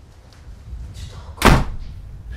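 A door slammed shut once, hard, about one and a half seconds in.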